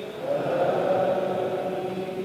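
A man's voice chanting Quranic recitation in long, held notes: an imam reciting aloud during congregational prayer.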